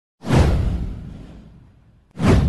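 A whoosh sound effect with a deep rumble underneath: it swells in suddenly about a quarter second in, sweeps downward, and fades away over about a second and a half.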